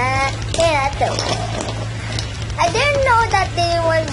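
A child's voice making wordless, high, sliding vocal sounds in several short phrases, over a steady low hum.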